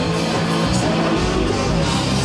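A live rock band playing: electric guitar and drums at full volume, with a steady beat of drum and cymbal hits.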